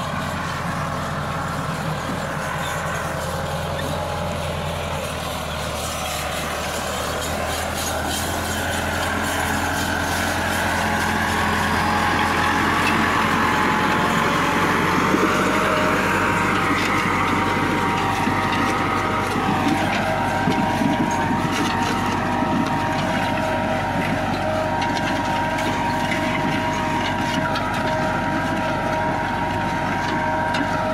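Massey Ferguson 375 tractor's four-cylinder diesel engine running steadily under load as it pulls a 16-disc offset harrow through the soil. It grows louder about a third of the way in.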